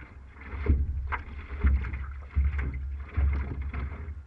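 Water lapping and splashing against a drifting paddleboard, picked up by the GoPro mounted on its nose, with wind buffeting the microphone in uneven low gusts.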